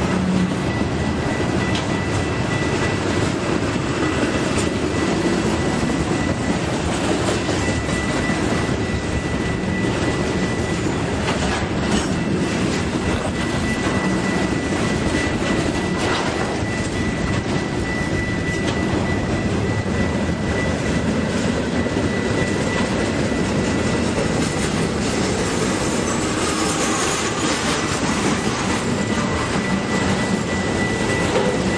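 Intermodal freight train of truck trailers on flatcars rolling past at speed: a steady, loud rumble of wheels on rail with clickety-clack from the rail joints. A thin, steady high-pitched tone runs over it.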